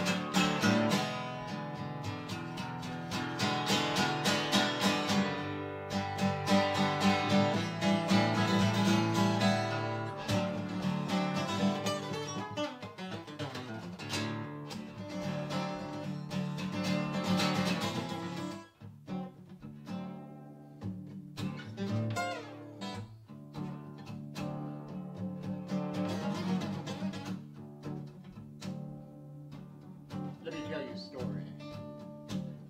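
Solo steel-string acoustic guitar playing, strummed chords mixed with picked notes. It pauses briefly about two-thirds of the way through and is lighter and sparser afterwards.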